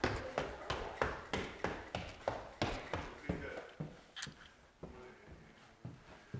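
Footsteps hurrying up a flight of stairs, about three steps a second, fading over about four seconds.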